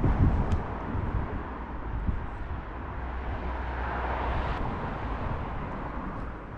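Steady outdoor background noise in a suburban garden: a low rumble with a hiss over it, swelling a little around the middle.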